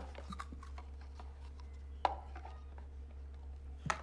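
Faint clicking and rubbing of large plastic toy building blocks being handled and pressed together, with one sharper click about two seconds in, over a steady low hum.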